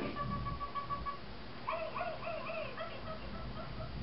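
A dog whining: one long, steady high-pitched whine in the first second, then a quick string of short rising-and-falling whimpers.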